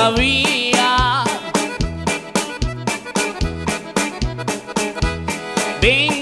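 Cumbia band playing live: a button accordion carries the melody over electric bass, congas and a steady percussion beat.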